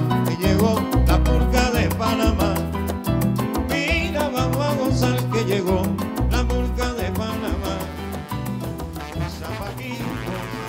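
Salsa music with a steady, repeating bass rhythm, growing a little quieter toward the end.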